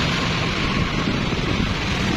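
Steady roadside traffic noise with wind rumbling on the microphone.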